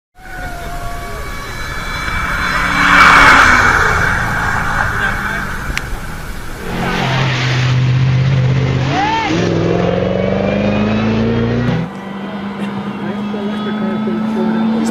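A 2008 Ford Shelby GT500 race car's supercharged V8 running hard on the hillclimb, loudest as it passes about three seconds in, with tyre noise on wet tarmac. Steady engine notes follow, with spectators' voices mixed in.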